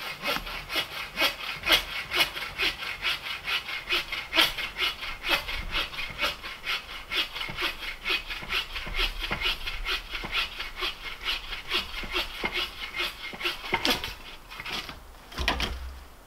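A hand saw cutting through wood with steady back-and-forth strokes, about three a second, stopping near the end.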